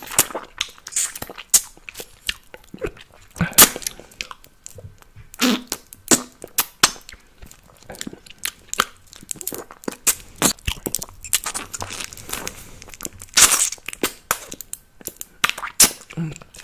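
Close-miked wet mouth sounds from sucking on an apple gel candy tube: an irregular run of sharp lip smacks and tongue clicks, the loudest about three and a half seconds in and again near the end.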